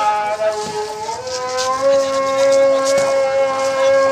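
A voice sustaining a long note: the pitch wavers and slides for the first second or so, then rises and holds steady to the end. Faint crowd noise underneath.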